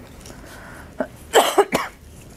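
A person coughs once, briefly, about a second and a half in, just after a short click.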